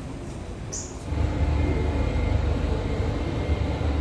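Singapore MRT North East Line train running, heard from inside the carriage: a steady low rumble comes in about a second in, after a quieter moment with a brief high hiss.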